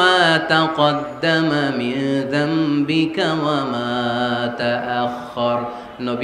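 A man singing a slow devotional Bengali verse in a chanting style, with long held, gliding notes and a sustained note through the middle.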